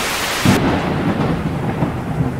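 TV-static hiss that cuts off about half a second in, giving way to a rumbling thunder-and-rain sound effect.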